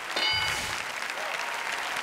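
Studio audience applauding, with a short bright chime and a low thud near the start: the game-show answer-reveal sound that marks a correct answer appearing on the board.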